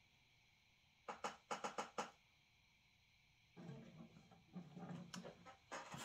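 Quiet handling of a Martin DC-35E acoustic guitar as it is turned around. About a second in there is a quick run of about five light taps. Faint low shuffling follows in the last couple of seconds.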